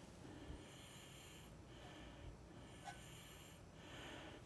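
Near silence: faint breathing close by, in slow breaths about a second long, with a couple of tiny clicks.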